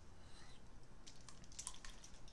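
Faint, scattered clicks over quiet room tone, a few of them close together in the second half.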